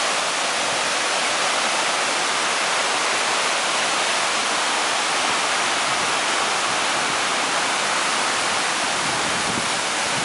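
Tall waterfall plunging down a cliff: a steady rush of falling water with no breaks.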